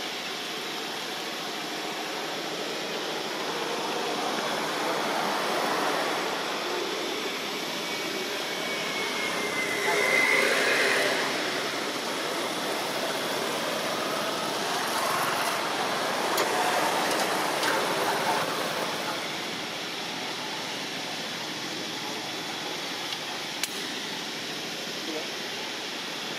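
Steady outdoor background hiss with indistinct voices too faint to make out words, and a short high gliding call about ten seconds in.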